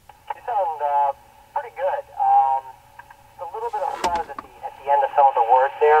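Another amateur radio operator's voice answering over a Yaesu FTM-400XDR mobile radio's speaker. It has the thin, narrow-band sound of an FM radio transmission, with a faint low hum underneath and a sharp click about four seconds in.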